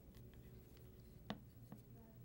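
Near silence with faint craft-room handling noises. There is one sharp click a little past halfway and a fainter tick just after it.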